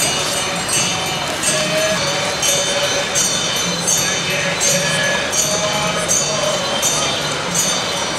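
Devotional music: a voice chanting a held, wavering melody over jingling metal cymbals or bells struck in a steady rhythm about twice a second.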